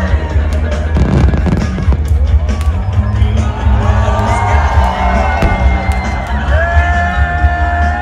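Fireworks banging and crackling over loud dance music with a heavy bass beat.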